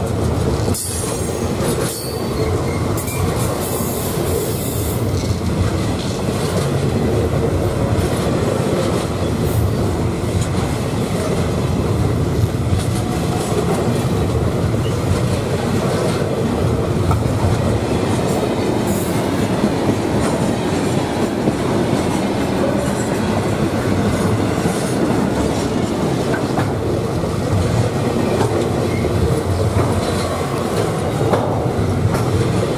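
Container wagons of a long freight train rolling past close by, a steady loud rumble of wheels on rail. Brief high-pitched wheel squeals come mostly in the first few seconds and once more near the middle.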